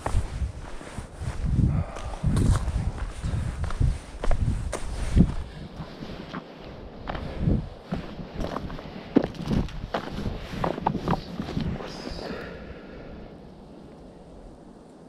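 A hiker's footsteps on a dry dirt and gravel trail, a steady walking rhythm of thuds and small stone clicks that fades as the walker slows and stops near the end.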